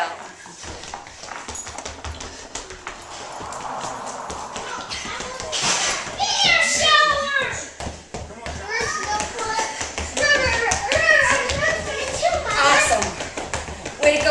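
A young child talking and calling out, starting about five seconds in, over quick footfalls and taps of sneakers on a hardwood floor during agility-ladder drills.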